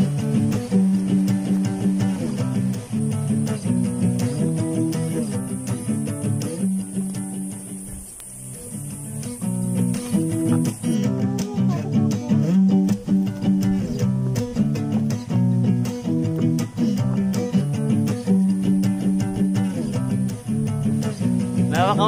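Background music led by plucked guitar, with repeating note patterns; it dips briefly in loudness about eight seconds in, then picks up again.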